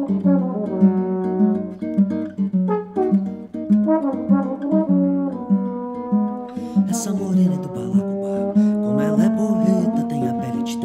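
Nylon-string classical guitar picking a melodic song intro, with a trombone alongside. About six or seven seconds in, the guitar moves to sharper strummed strokes under longer held notes.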